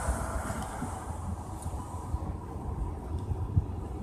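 Low, steady rumble of a car's engine and tyres heard from inside the cabin as it moves slowly through traffic.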